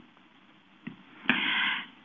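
A short pause in speech: a faint mouth click a little under a second in, then a brief breath drawn in just before speaking resumes.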